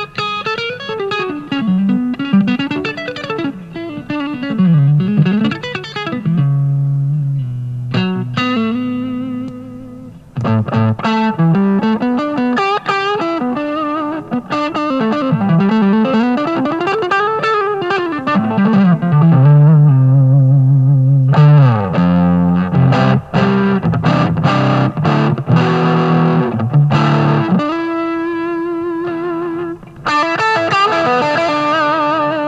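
Electric guitar played through a ToadWorks Fat City Dual Overdrive pedal into an amp: overdriven lead lines with wide string bends and, later, fast picked runs.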